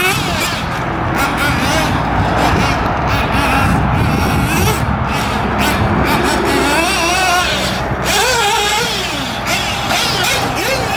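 Nitro engine of a Kyosho MP10 1/8-scale buggy revving up and down as it laps, its pitch rising and falling again and again with the throttle.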